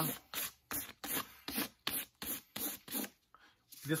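Fine-grit sandpaper rubbed by hand in quick back-and-forth strokes over a teju lizard-skin cowboy boot, about three strokes a second. The strokes stop about three seconds in. The sanding lifts the darkened surface of the sanded-black finish back to its original colour.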